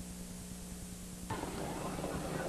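Steady electrical hum with hiss, the background noise of an old broadcast recording. Just past halfway the hiss gets a little louder and fuller.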